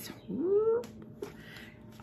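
A house cat meowing once: a short call that rises in pitch and then levels off, about a third of a second in.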